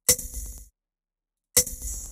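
Two previews of a 'glitch' electronic drum sample, the High Tom of Code.org Project Beats' Glitch kit. Each is a sharp, bright hit with a short ringing tone: one right at the start and one about a second and a half later.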